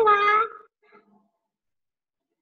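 A woman's voice calling out a name, the last syllable long and drawn out, ending about half a second in.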